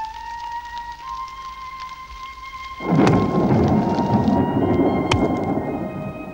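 A soft flute melody, then about three seconds in a sudden loud downpour of rain with thunder breaks over it, with a couple of sharp cracks in the storm before it eases near the end.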